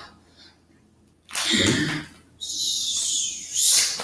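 A performer's voice making non-word vocal sounds: a short voiced sound about a second in, then a breathy sound that falls in pitch, ending in a brief hiss.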